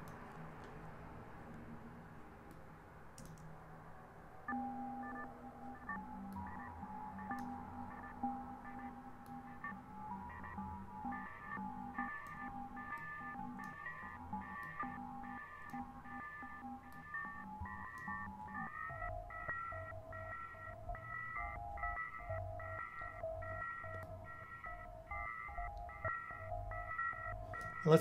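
Electronic music loop run through Ableton Live's Shifter effect in ring modulation mode: several steady tones chopped on and off in a regular rhythm. The tones come in a few seconds in, and about two-thirds of the way through they jump to a new set of pitches.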